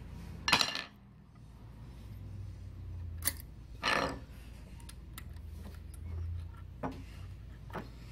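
A few short metallic clicks and clinks of a small screw and metal sewing-machine parts being handled by hand while a feed dog screw is fitted, over a faint low steady hum.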